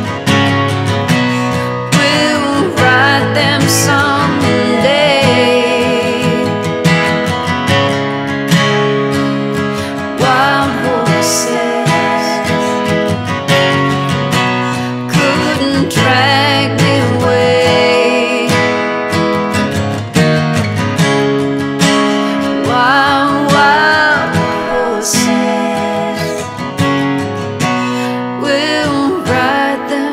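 Acoustic guitar strummed steadily through a slow song, with a woman's singing voice over it in several places.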